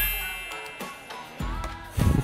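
A bell-like notification chime sound effect rings out and fades away over about a second.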